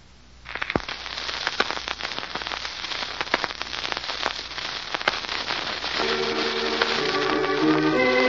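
Crackling, popping surface noise of an old disc recording starts suddenly about half a second in, full of sharp clicks. About six seconds in, music with sustained organ-like tones comes in over it.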